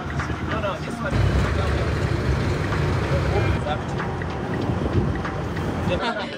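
A low, steady rumble that starts about a second in and eases off near the end, with indistinct voices faintly over it.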